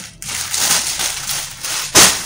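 Plastic rustling and crinkling as a black plastic bag and plastic-wrapped hair-extension packs are handled and rummaged through, ending in a loud crackle.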